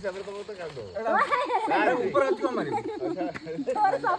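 Several people talking and calling out over one another, getting louder and busier about a second in. Behind them runs a steady high chirring of crickets.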